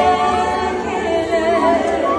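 Music of voices singing together, held notes that waver in pitch.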